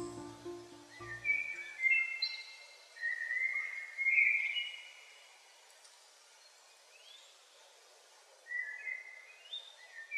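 Soundtrack music fading out about a second in. A bird then whistles in three short phrases of stepped notes, the last one climbing in pitch, with a quiet pause of a few seconds before it.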